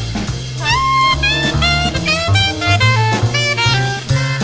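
Jazz combo playing an instrumental break: a saxophone solo line over bass and drum kit.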